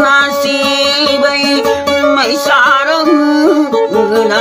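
A man singing a dayunday song with a wavering, sliding melody, accompanying himself on an acoustic guitar.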